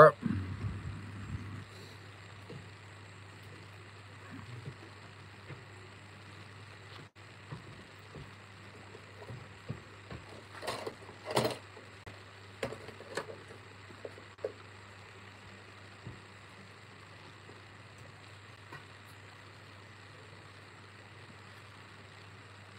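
Quiet outdoor background with a steady low hum, broken a little past halfway by a few brief, faint voices.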